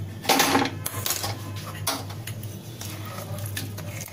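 Metal cookware clattering at a gas stove: an aluminium kadai and utensils knocking, with a loud clank about half a second in, a shorter one near two seconds, and small clinks between, over a steady low hum.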